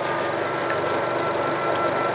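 16mm film projector (Eiki NT2) running, a steady fast mechanical clatter, under a steady held tone from the film's soundtrack.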